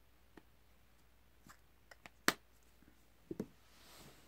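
Light clicks and knocks from a plastic baby bottle being handled and set aside: a few faint ticks, one sharp click a little past halfway, then two soft low knocks near the end.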